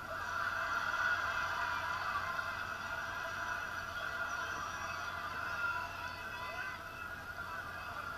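Fight crowd shouting and cheering, played back through a small screen speaker so it sounds thin and mid-heavy; it swells about a second in and then holds steady.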